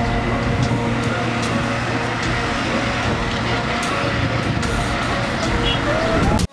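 Busy street traffic noise, a dense steady din, with film score music running underneath.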